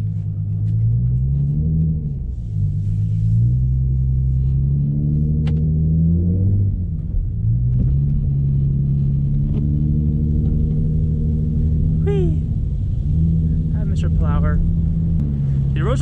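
Ford Mustang engine heard from inside the cabin, accelerating through the gears of its manual gearbox: the pitch climbs, drops at an upshift about two and a half seconds in and again about seven and a half seconds in, then holds at a steady cruise.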